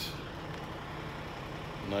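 Steady low hum of an idling truck engine, with a faint hiss over it.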